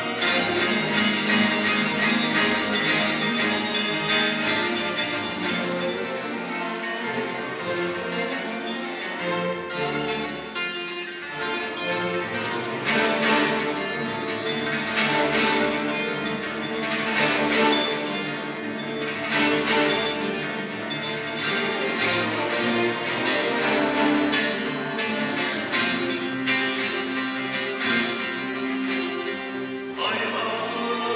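Turkish folk music played by a chamber string orchestra with a bağlama: fast, steady plucked strokes over violins and cellos.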